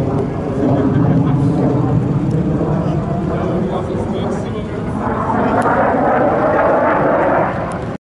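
F-16 fighter jet engine heard from the ground, a steady rushing roar that swells louder and brighter about five seconds in as the jet passes, with onlookers' voices mixed in.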